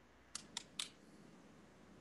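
Three faint, short clicks in quick succession, like keys or a mouse being clicked, picked up over a video-call microphone.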